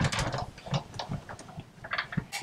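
Stampin' Up Big Shot die-cut machine being hand-cranked, the magnetic platform, steel framelit die and cutting pad rolling through its rollers to cut cardstock, with a run of irregular clicks and creaks. A sharp click at the very start is the loudest sound.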